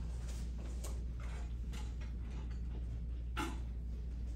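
Classroom room tone: a steady low hum with scattered soft clicks and taps from students working at their desks, and one sharper click about three and a half seconds in.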